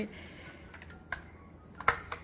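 A few light plastic clicks and taps from a child's toy car being handled, the sharpest one near the end, over quiet room tone.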